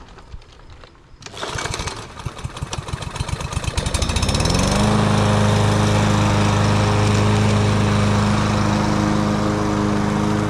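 Craftsman push mower's engine starting about a second in: fast firing pulses that speed up and get louder, then a rising pitch as it comes up to speed. From about five seconds on it runs steady and loud.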